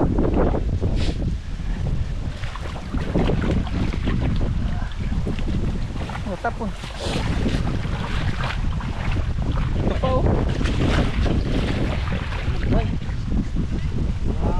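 Wind buffeting the microphone over splashing and sloshing of shallow stream water as a person wades and dips a mesh bag of fish in it, with a few short bursts of voice in the background.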